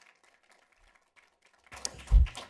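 Faint, scattered clapping from a few people in the audience, applauding testimony. Near the end there is a louder knock and rustle.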